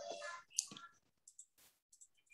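The tail of a spoken 'wow' fades out, followed by a few faint, short clicks.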